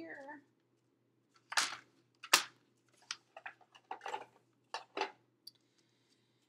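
Cardstock and crafting tools being handled on a table: a rustling swish about one and a half seconds in, a sharp clack just after two seconds, then a run of short rustles and light taps.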